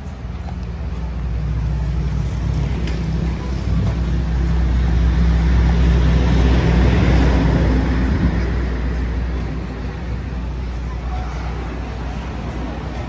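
Street traffic: a steady low engine rumble, swelling to its loudest in the middle as a vehicle passes, then easing off.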